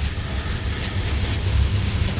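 A pause between words: only the recording's steady background hiss with a low hum underneath.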